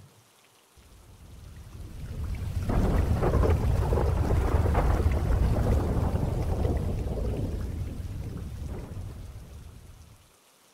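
A rolling rumble of thunder with rain. It swells in about a second in, peaks mid-way, then slowly fades away near the end.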